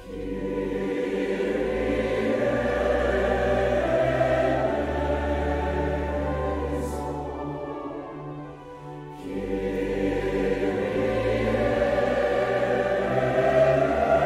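Large mixed choir singing with organ accompaniment, the organ holding low sustained bass notes. The choir enters at the start, a phrase dies away about eight and a half seconds in, and the voices come in again about a second later.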